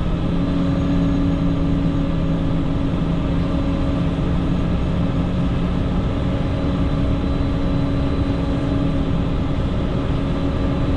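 PistenBully 600 snow groomer's diesel engine running steadily under load as the front blade pushes snow, heard from inside the cab as an even hum with several held tones. The lowest of those tones drops away about two-thirds of the way through.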